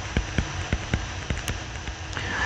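A pen stylus tapping and ticking on a touchscreen as a word is handwritten: an irregular run of small clicks, about five or six a second.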